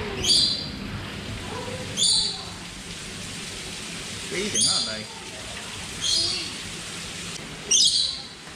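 A bird chirping: short high chirps, about five of them, a second or two apart, over faint background voices.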